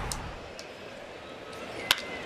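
Low ballpark crowd noise, then near the end a single sharp crack of a wooden bat hitting a pitched baseball.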